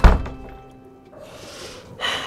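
A single heavy, deep thud that cuts off the music. The music rings away over about a second, and a soft hiss follows.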